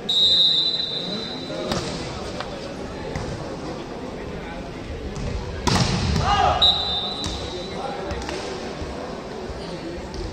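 Volleyball referee's whistle blown for about a second and a half, the signal to serve, then the ball is struck. A loud spike about six seconds in amid players' shouts, followed by a shorter whistle that ends the rally.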